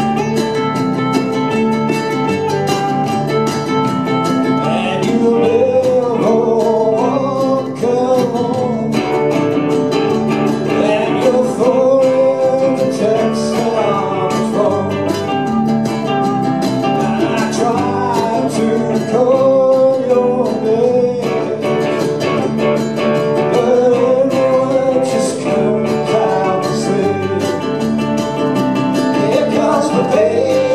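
Ukulele trio playing live: strummed chords with a picked melody line over them.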